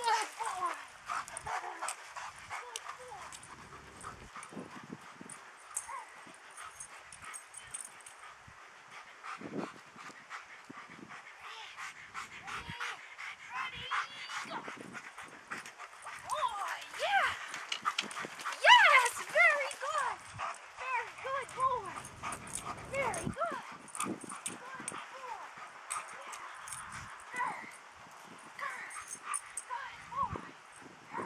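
A German Shepherd whining and yipping in excitement, with short clicks and clatter throughout; the densest, loudest run of high whines and yips comes a little past halfway.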